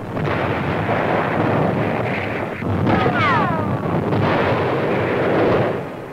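Battle sound of artillery fire and explosions, a dense continuous roar, with a falling whistle like an incoming shell about three seconds in.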